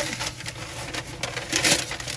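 Sheets of newspaper rustling and crackling as they are torn and crumpled by hand, with a louder burst of crackling about three-quarters of the way through.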